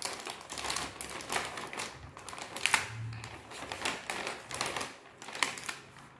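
Clear plastic pouch of an art kit crinkling as it is handled and unpacked, with irregular light clicks and taps as plastic art supplies are set down on a tile floor.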